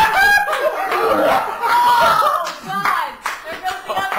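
Several people shouting, cheering and laughing excitedly, with hand claps.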